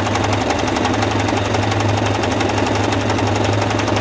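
Singer 8280 electric sewing machine running steadily at speed, stitching a zigzag picot edge with the picot foot: a rapid, even needle clatter over a steady low hum.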